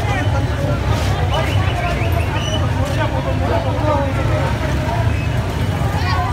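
Many people talking over each other, with the steady low rumble of an idling van engine underneath.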